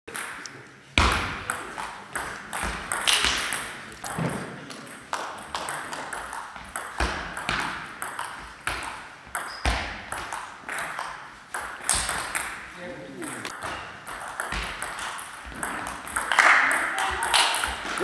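Table tennis ball in a long rally: sharp clicks of paddle hits and table bounces, about two a second, echoing in a large hall.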